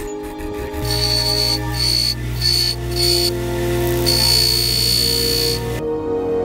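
A small power tool running on metal, its high whine cutting in and out in short bursts and then holding for about a second and a half before stopping abruptly, over background music.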